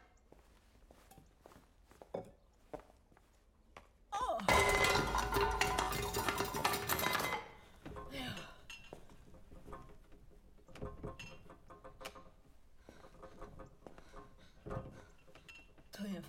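Metal pots and pans crashing down and clattering, ringing loudly for about three seconds from about four seconds in, among lighter clinks and knocks of kitchenware.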